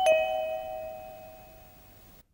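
Two-note doorbell chime, ding-dong: a higher note and then a lower one, ringing on and fading away over about two seconds.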